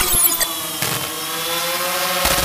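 Logo-intro sound effect: a continuous motor-like whine that rises slowly in pitch in the second half.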